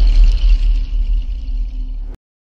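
Deep rumbling tail of a cinematic logo-reveal sound effect: a low drone with steady held tones above it, slowly fading.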